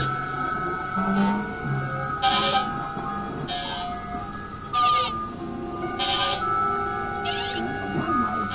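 Experimental electronic synthesizer music: steady droning tones with short bursts of high hiss that come back about every second and a quarter.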